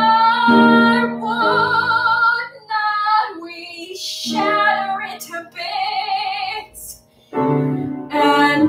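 A woman singing a musical-theatre song solo, holding notes with vibrato in short phrases, over a piano accompaniment. The singing breaks off briefly about seven seconds in before the next phrase starts.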